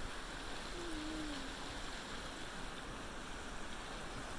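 Steady, even rush of glacial creek water flowing.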